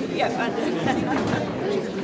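Crowd chatter: many people talking and greeting one another at once, their overlapping voices filling a large hall.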